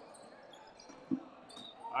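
A rubber dodgeball bouncing once on a hardwood gym floor, a single short thud about a second in, over faint hall ambience.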